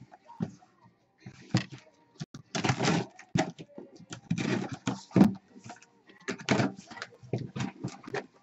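A cardboard Priority Mail box being handled and opened by hand: a run of irregular scrapes, rustles and short knocks of cardboard flaps and tape.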